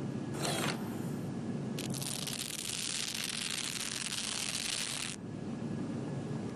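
Mechanical whirring with a ratcheting, grinding texture from a rig spinning kiwifruit between metal spindles. It starts about two seconds in and cuts off suddenly past the five-second mark, after a brief swish under a second in, all over a steady low hum.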